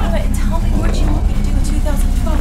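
A loud, continuous low rumble, with short cries or pitched calls and sharp cracks over it.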